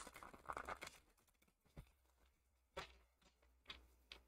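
Near silence with faint handling of a deck of cards: a soft rustle, then three faint clicks about a second apart as the cards are sorted through by hand.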